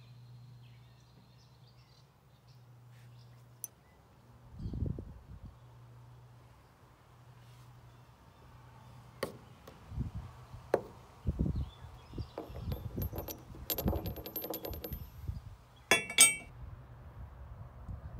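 Metal mower-blade hardware clinking and clattering as blades, bolts and a socket are handled, with scattered knocks, a quick run of clicks in the second half and a loud metallic clatter near the end, over a faint low hum.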